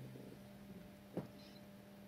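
Faint steady electrical mains hum from the guitar rig, with one short click a little past a second in.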